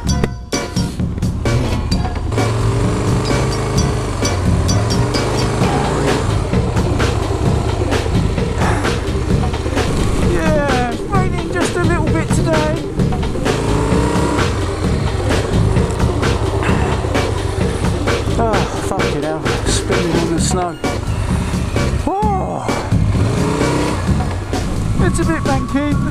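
Background music with singing and a steady beat, over the low running sound of a motorcycle on the road.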